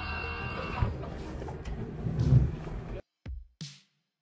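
Muffled background noise with a few low thumps, then an abrupt cut to silence and two short clicks with a brief high hiss, a camera-shutter sound effect.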